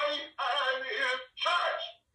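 Recorded singing voices in short phrases, likely the closing music or jingle of the broadcast, fading out at the end.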